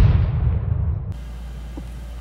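Cinematic boom sound effect of an animated logo intro, its deep rumble dying away over about a second, then cut off and replaced by a steady low hum.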